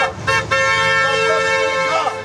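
A car horn held in one long steady blast of about a second and a half, starting about half a second in.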